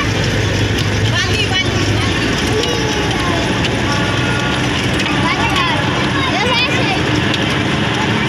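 Steady engine hum and road noise inside a moving road vehicle, with indistinct voices over it.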